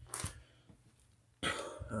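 A man's single brief cough-like throat sound about a quarter-second in, then quiet until he starts speaking near the end.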